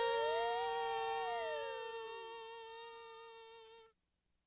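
Lo-fi home-recorded electronic music: several electronic tones held together as a chord. One note glides up and then slides down while a higher one sweeps down. The chord fades steadily and cuts off abruptly just before the end.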